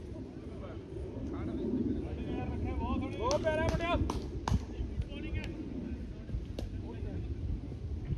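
Distant players shouting on a cricket field, one voice rising in a long call in the middle, with a few sharp clicks around it and a steady low rumble on the microphone.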